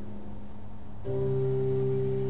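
A low steady tone, joined about a second in by a held organ-like keyboard chord as the song's intro begins.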